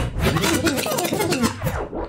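A scratchy, rubbing sound mixed with a voice over the sound system, cutting off sharply near the end.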